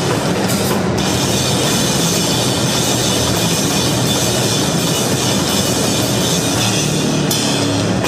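Live grindcore/powerviolence played by a bass-and-drums band: heavily distorted bass and drums in a loud, dense, unbroken wall of noise, the low bass notes shifting every second or two.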